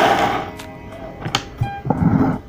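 A handful of plastic pens, Sakura Pigma Micron fineliners, clattering and sliding as they are set down in a pile on a wooden table, fading out about half a second in, then a single sharp knock of a pen on the wood a little past the middle.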